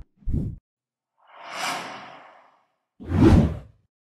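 Whoosh sound effects from an animated end screen: a short low thump just after the start, a soft airy whoosh that swells and fades around the middle, then a louder swish with a heavy low hit about three seconds in.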